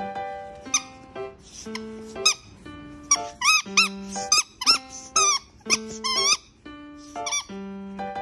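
Dog chewing a squeaky toy: about a dozen short squeaks that rise and fall in pitch, coming quickest in the middle, over background music.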